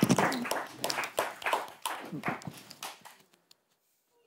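A small group of people applauding by hand. The clapping dies away about three seconds in.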